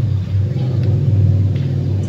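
A steady low mechanical drone, like an engine running, holding an even pitch.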